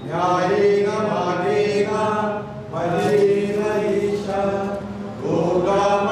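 Devotional mantra chanting during an aarti, sung in one melodic voice with held, sliding notes, in three phrases, each starting with a rise in pitch.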